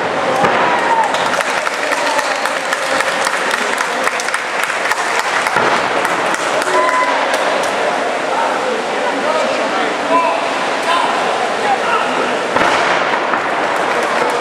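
Crowd of spectators in a large, echoing hall: a steady din of many voices with scattered shouts, and a run of sharp claps and knocks through it, some of them wrestlers landing on the ring mat.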